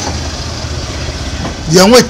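A steady low engine rumble runs through a pause in speech, with a man's voice starting again near the end.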